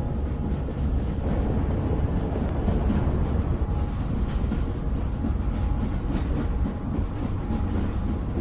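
A steady, fairly loud low rumbling noise with no clear pitch.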